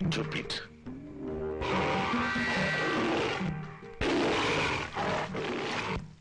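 Two tiger roars, each about two seconds long, over background film music.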